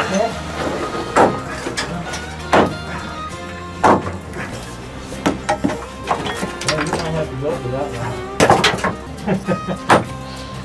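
Sledgehammer striking rock to break up ore in a mine tunnel: sharp blows about every second and a half at first, then more irregular strikes, with a quick cluster near the end. Music plays underneath.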